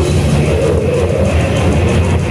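A live death-thrash metal band playing loud, with distorted electric guitars, bass and drums, heard from within the audience in a club.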